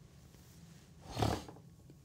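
A single short breath through the nose close to the microphone, a little over a second in, against quiet room tone.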